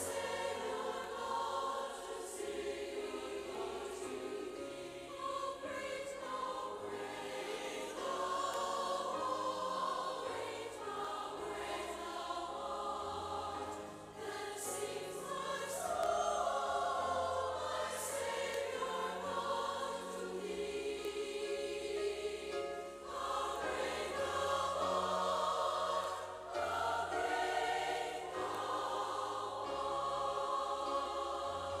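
Choral music: a choir singing in long, sustained phrases over low held notes.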